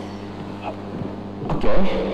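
A steady low electrical hum in the room, with a man's brief "Ok" near the end.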